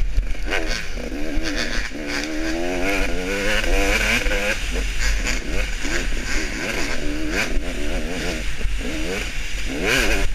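KTM 300 two-stroke dirt bike racing through a woods trail, heard from the rider's helmet camera: the engine revs up and down again and again with throttle changes and gear shifts, with wind buffeting the microphone and a few knocks from bumps.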